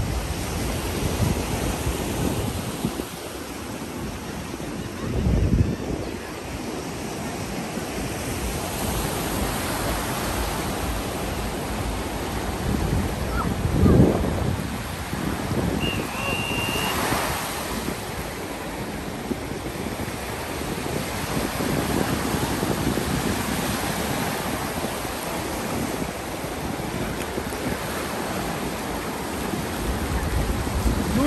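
Ocean surf breaking and washing up the shore in a steady rush, with wind gusting on the microphone a couple of times.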